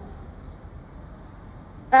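A pause in speech: faint, steady background noise of the hall picked up through the microphone, with no distinct sound event.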